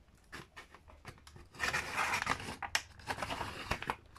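Paper trimmer's blade slicing through a sheet of paper: a few small clicks, then a scraping cut that lasts about two seconds, starting partway in.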